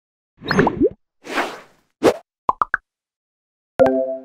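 Cartoon-style end-screen sound effects: a bubbly pop and a whoosh, a short pop, then three quick plops, each higher than the last. A bright chime dings near the end, the click sound for a cursor pressing a Like button.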